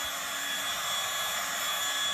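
Electric heat gun running steadily, blowing air to dry chalk paint: an even rush of air with a faint steady motor whine.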